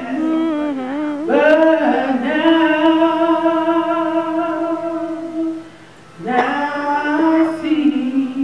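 A man singing solo into a microphone, holding long wavering notes. He pauses briefly about six seconds in, then starts the next phrase.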